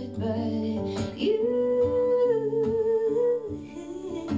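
A woman singing a slow song live with guitar accompaniment, holding one long note through the middle.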